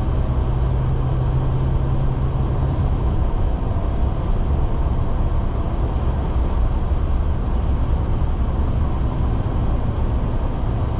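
Steady road and engine noise of a car at highway speed, heard from inside the cabin, an even rumble strongest in the low end. A low steady hum drops away about three seconds in.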